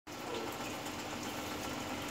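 Faint steady hiss with a low hum under it: room tone.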